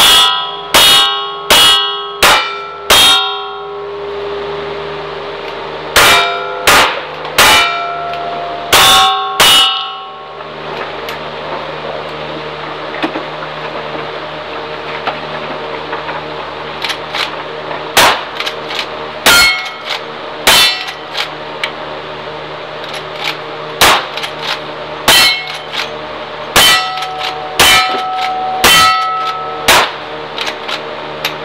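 Cowboy action shooting stage. Two quick strings of five revolver shots, each shot followed by the ringing clang of a steel target being hit. After a pause of several seconds comes a slower series of lever-action rifle shots, each also ringing off steel.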